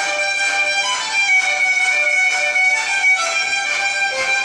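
Irish fiddle music playing, a quick tune of short notes following one another.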